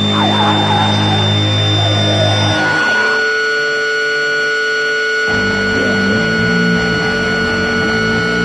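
Loud, sustained electric guitar amplifier feedback and drone in a live punk set: steady held tones over a low hum. The pitch shifts about three seconds in, and the low hum drops out until about five seconds in.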